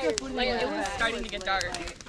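Indistinct talk from several voices at once: a group chatting, with no words clear enough to make out.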